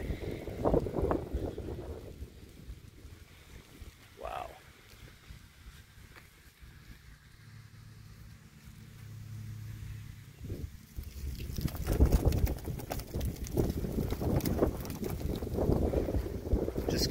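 Wind buffeting a handheld microphone, quieter through the middle and gusting loudly over the last few seconds. A faint low hum sits under it partway through.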